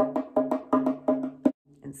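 Frame drum tapped with the fingertips in a quick, even run of about six strokes a second, each with a ringing low tone, stopping abruptly about a second and a half in.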